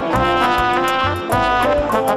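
Music: an instrumental break of the song, with horns playing a melody over bass and a steady drum beat.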